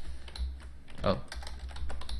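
Computer keyboard keystrokes: several irregular key clicks while a line of code is typed and corrected.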